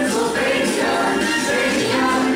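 A choir singing, several voices together over music, with held notes that change pitch.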